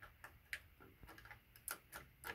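A few faint, sharp clicks of a small metal sliding-door hanger bracket and its threaded adjusting screw being handled and turned by hand; the clearest come about half a second in and near the end.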